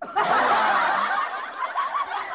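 Several people laughing and giggling at once, overlapping, breaking out suddenly.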